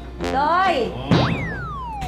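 Cartoon-style comedy sound effect: a short warbling tone that bends up and down, then a quick upward swoop and a long falling whistle-like glide.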